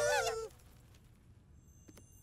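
A call of wavering, bending pitch breaks off about half a second in. Then near quiet, with faint high ringing tones and small clicks near the end.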